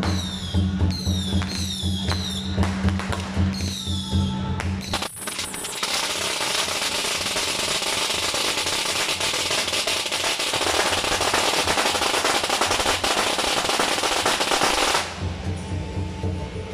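Procession music with a steady low pulse and repeated falling whistle-like tones. About five seconds in, a long string of firecrackers starts crackling continuously and drowns it out. The crackle stops abruptly near the end and the music comes back.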